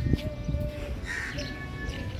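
A bird calls once, a short harsh call about a second in, over background music with sustained notes.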